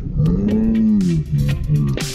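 A man's long, drawn-out wordless vocal groan that rises and then falls in pitch, followed by a few shorter voiced sounds, over background music.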